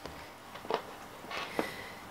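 Faint handling of a metal polymer-clay extruder as it is taken apart and loaded, with two light clicks of its parts, about three-quarters of a second in and again near the end.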